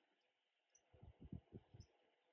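Near silence, with a quick run of faint, soft knocks about a second in and a few tiny high chirps.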